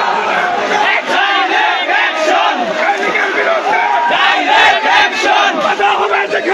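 A large crowd of men shouting together, many loud voices overlapping without a break.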